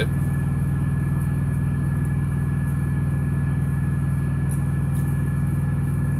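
Semi truck's diesel engine idling steadily, heard from inside the cab as a low, even hum.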